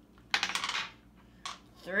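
Rapid clatter of small plastic game pieces being handled, lasting about half a second, followed by one short click about a second later.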